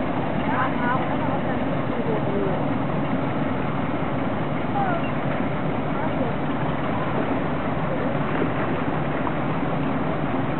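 Steady, even rumble and rush of a river cargo barge's engine and moving water, with faint, indistinct voices in the background.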